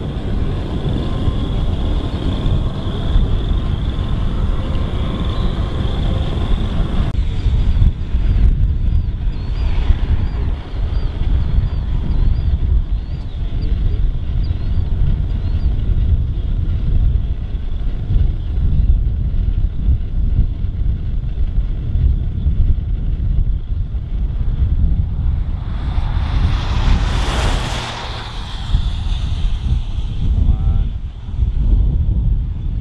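Wind buffeting the microphone with a constant, gusty low rumble. Near the end, a rush of noise swells and fades over a few seconds.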